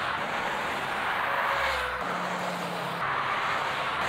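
Street traffic: a steady rush of tyre and engine noise from passing cars, with a low engine hum about halfway through.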